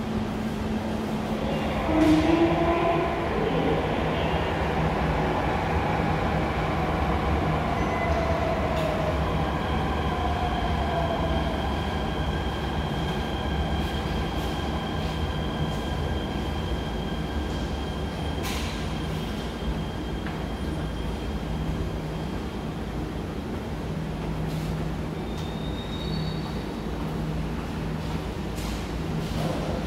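MRT Jakarta electric metro train in an underground station: a steady low rumble with motor whines that slide down in pitch over the first several seconds, then steady high whining tones.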